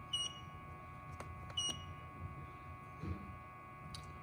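Two short, high electronic beeps about a second and a half apart from a handheld OBD-II scan tool's keypad as it pages through stored trouble codes, with a few faint clicks between.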